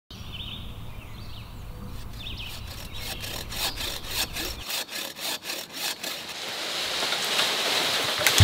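A hand saw cutting through wood in steady back-and-forth strokes, about three a second, with a few bird chirps in the first second or so and a swelling rush of noise near the end.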